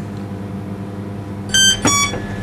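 A shop door's two-note electronic entry chime, a higher ding and then a lower dong, sounding near the end to signal a customer coming in. A steady low electrical hum runs underneath.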